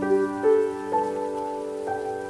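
Slow, calm solo piano music, a new note or chord sounding about every half second, over a steady patter of rain.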